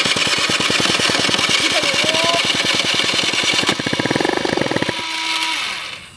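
Small scooter engine, its carburetor removed, cranking on the electric starter while butane from a cigarette lighter is fed straight into the intake manifold: a fast, even chugging rhythm that changes about four seconds in and dies away near the end. It does not keep running on the lighter gas.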